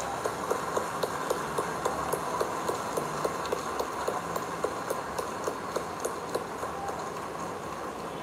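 Crowd applauding, with a steady run of individual claps about four a second standing out over the general clapping.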